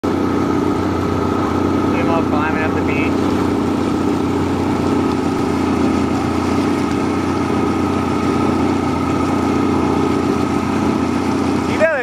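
A boat's engine running steadily: a constant, even engine drone with a low hum that does not change throughout.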